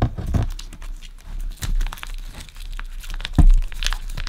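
Thin plastic shrink wrap on a vinyl LP sleeve being peeled back and crinkled by hand, in irregular crackles, with one dull thump against the cardboard jacket about three and a half seconds in.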